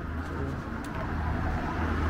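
Outdoor street ambience: a low steady rumble of road traffic, growing slightly louder, with a couple of faint ticks in the first second.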